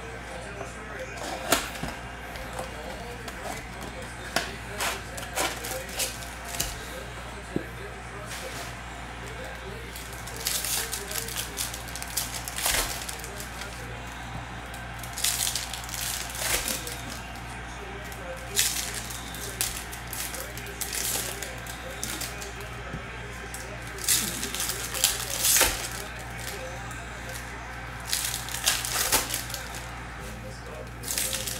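Foil wrappers of 2024 Bowman baseball card packs being torn open and crinkled by hand, in several short bursts of rustling. Before them come a few sharp clicks and taps from handling the cardboard blaster box.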